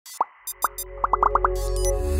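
Intro sting: a quick run of short pitched pop sound effects, about six in half a second after a couple of single pops, over a low synth swell that rises steadily, with a few bright high clicks early.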